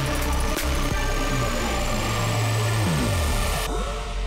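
Electronic drum and bass music mixed live by a DJ, in a build-up: a high sweep rises steadily, bass notes slide down in pitch about three seconds in, and the top end cuts out near the end.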